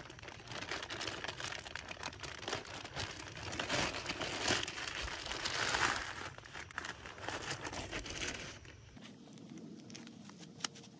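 Clear plastic bag crinkling and rustling as it is pulled off a black plastic nursery pot, loudest about halfway through, then stopping about nine seconds in.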